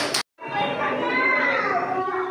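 A child's voice and children's chatter in a large hall. Near the start a short burst cuts out to a brief silence at an edit, and then the voices resume.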